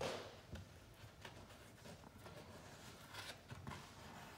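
Grasscloth wallpaper off-cut being peeled away from a double-cut seam: a short rustle of the paper-backed grasscloth at the start, then faint scattered rustles and small clicks as the waste strip is worked free.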